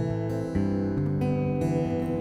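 Background music: a steadily played acoustic guitar, with the chord changing about half a second in.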